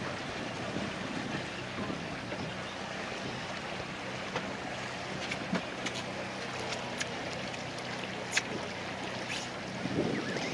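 A small boat underway: water washing along the hull and wind on the microphone, over a steady low hum from the boat's motor, with a few faint clicks.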